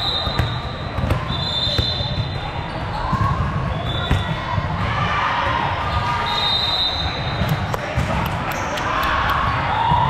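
Busy, echoing volleyball hall: short, steady, high-pitched referee whistle blasts sound four times across the courts, over the clack of volleyballs being hit and bouncing and the chatter of players and spectators.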